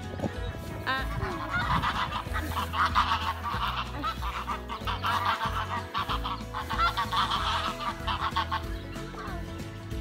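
A flock of domestic geese calling, with many short calls overlapping from about a second and a half in until near the end.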